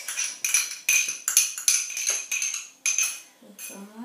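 A metal utensil clinking repeatedly against a container while ingredients are loaded in: about a dozen sharp, irregular strikes, each with the same short metallic ring.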